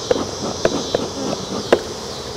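Honeybees buzzing steadily around an open, crowded hive, with a few short sharp clicks, the loudest near the end.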